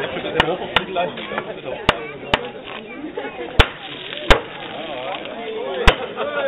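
Wooden mallet knocking a brass tap into a small hooped wooden keg to tap it: seven sharp knocks at uneven intervals, over crowd chatter.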